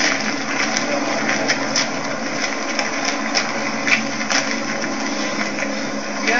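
A steady low mechanical hum under a hissy background, with scattered short clicks.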